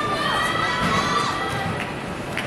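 A group of children cheering and shouting together in long, high held calls over general crowd noise; the calls fade toward the end.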